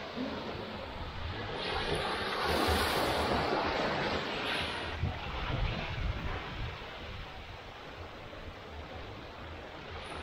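Small waves breaking and washing up a sandy shore, with wind buffeting the microphone. The wash swells about two seconds in, peaks around three, then eases off.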